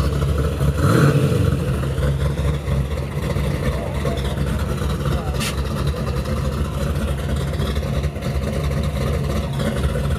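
Supercharged, nitrous-fed small-block Chevrolet V8 in a 1966 Impala idling with a steady low rumble as the car creeps forward after its burnout. A single sharp click about halfway through.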